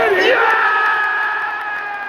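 Football stadium crowd shouting as a shot is saved in the goalmouth, with one close voice holding a long yell on a steady pitch that fades near the end.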